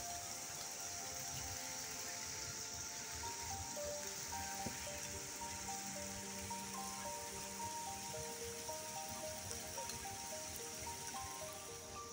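Calm background music, a melody of short held notes, over a steady hiss of water trickling and spattering down a mossy rock face.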